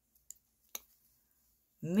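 Two faint short clicks in an otherwise quiet stretch, the second a little louder, then a woman starts speaking near the end.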